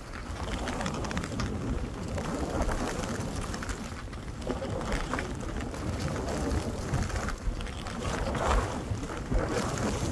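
Wind rushing over the microphone of a moving skier, a steady low rumble, with the hiss and scrape of skis turning through soft new snow swelling now and then.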